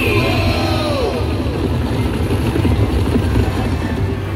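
Buffalo Xtreme slot machine sound effect as the free-games feature starts: a dense low rumble throughout, with gliding whooshing tones over the first second or so.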